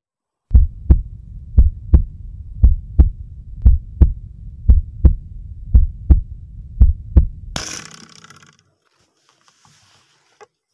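A heartbeat sound effect: paired low thumps, lub-dub, about one beat a second, seven beats in all. About three-quarters of the way in, a sudden loud rush of noise lasting about a second cuts it off.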